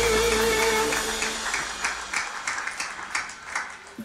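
A live band's final held chord, with a wavering sustained note on top, dies away about a second in, and scattered audience clapping follows and thins out.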